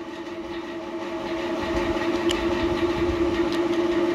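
A steady hum with a low rumble underneath that grows gradually louder, like a vehicle approaching.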